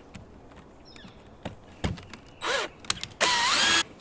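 Cordless drill/driver backing out a light fixture's mounting screw: a few clicks, a short run about two and a half seconds in, then a louder half-second run near the end with a whine rising in pitch.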